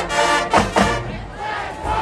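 Marching band's brass and drums playing the closing chord and hits of the final tune, cutting off about a second in. The crowd then cheers and shouts.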